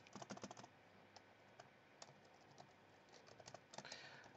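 Faint computer keyboard typing: a quick run of keystrokes at the start, a few scattered single keys, then another quick run near the end.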